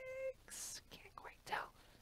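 A woman's voice only: a held, hummed vowel that trails off, then soft whispered murmurs and breaths as she counts under her breath.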